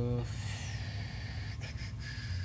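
A man's drawn-out "um" trailing off in the first moment, then a breath, and after it a steady low room hum with a couple of faint ticks.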